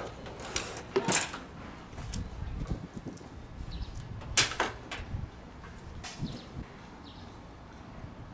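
Several short, sharp hisses of gas let out through manifold gauge hoses at an air-conditioner outdoor unit's service valves, the loudest about four and a half seconds in, over a low background rumble.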